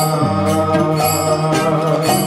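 Devotional kirtan music: a harmonium's held chords under a sung chant, with sharp percussion strokes about twice a second keeping the beat.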